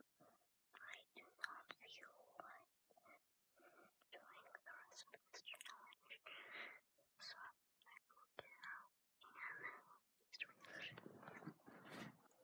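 A boy whispering faintly in short phrases with pauses between them.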